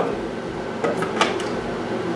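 The hard plastic clamp of a mini clip-on fan clicking and knocking against a stroller frame as it is fastened on, a few sharp clicks about a second in, over the fan's steady whir.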